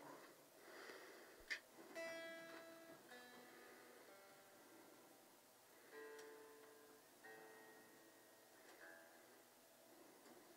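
Electric guitar being tuned: single strings plucked softly one at a time, each note ringing and fading, about four plucks in all, with a small click between the first two.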